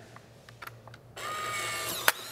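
Polaroid OneStep 2 instant camera firing: faint shutter clicks, then about a second in the motor whirring as it ejects the double-exposed print.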